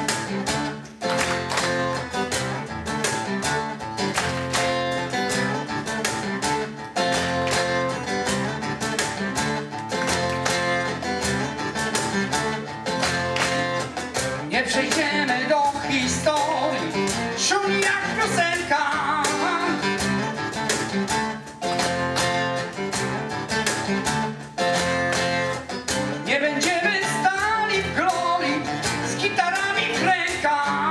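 Live acoustic band playing: steel-string acoustic guitar and a steady cajon beat with violin, viola and cello. A man's rock vocal comes in about halfway through and again near the end.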